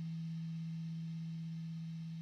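A single low, almost pure tone held steady by the Hologram Electronics Infinite Jets Resynthesizer pedal, sustaining a note from the guitar.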